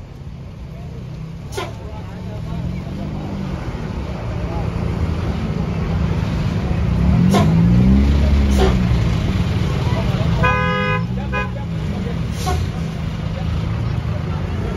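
A large tour bus's diesel engine running as it passes close, the rumble swelling to its loudest a little past halfway. About ten and a half seconds in, a short burst of a multi-tone bus horn sounds, the 'telolet' type, with voices and a few sharp clicks around it.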